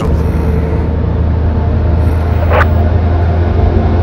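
Steady low rumble of a moving vehicle heard from inside the cabin, with one brief higher sound about two and a half seconds in.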